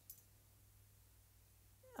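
Near silence: room tone with a steady low hum and one brief, faint tick just after the start.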